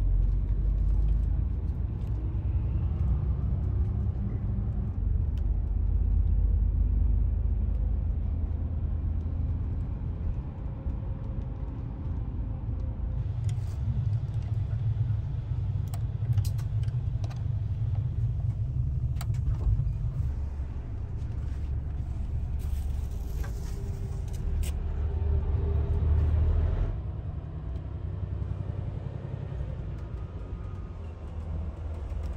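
Steady low rumble of a highway coach's engine and road noise heard from inside the moving cabin, with a few light clicks and knocks partway through as the cabin's fittings are handled.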